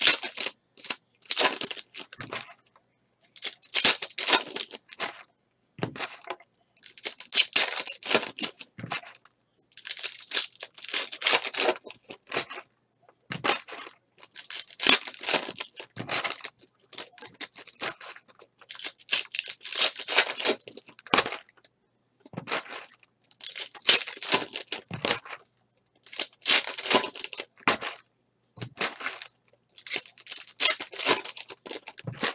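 Plastic trading-card pack wrappers being torn open and crinkled by hand, pack after pack, in short bursts every two to three seconds.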